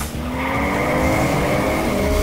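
DeLorean time machine sound effect: a car engine revving up hard, its pitch rising steadily, with a high tire squeal as the car launches away.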